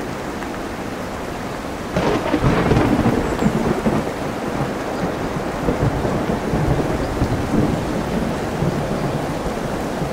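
Steady rain over sea surf. About two seconds in a thunderclap breaks in, crackling at first, then rumbling on and slowly dying away.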